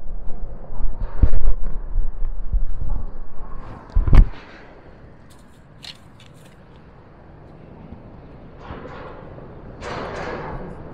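Handling noise while a caught sauger is held and unhooked by hand: low rumbling and scraping for about four seconds, ending in one sharp knock, then quiet with a few faint clicks.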